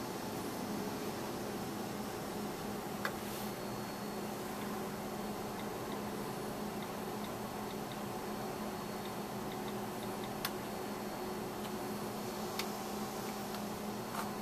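Steady low electrical hum and hiss of room noise, with three brief faint clicks.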